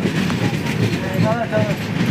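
Running rumble inside a crowded Indian passenger train coach in motion: a steady low noise of the carriage on the rails. A passenger's voice rises over it briefly about a second in.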